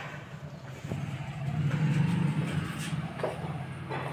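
A low engine hum that swells about two seconds in and then eases off, with a couple of light knocks.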